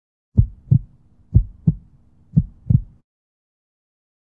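Heartbeat sound effect: three double low thumps, lub-dub, about a second apart over a faint low hum, cutting off suddenly about three seconds in.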